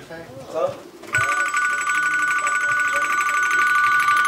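Electronic ringing tone that switches on abruptly about a second in and holds steady, with a fast warble.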